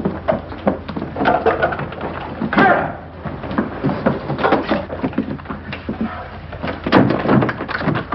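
Rapid knocks and handling sounds, then a door slammed shut about seven seconds in, over a steady low hum in the old film soundtrack.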